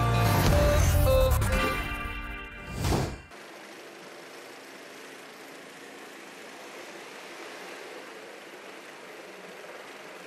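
A short branded intro jingle with a beat ends in a whoosh about three seconds in. It gives way to a quieter, steady outdoor race-feed background: an even hiss with a faint engine hum.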